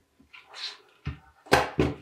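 Hot glue gun set down into a metal pan: a soft rustle, a small knock, then two sharp knocks about a third of a second apart near the end.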